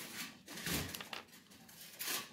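A few short, soft rustles of a plastic fashion doll and its long hair being handled by hand.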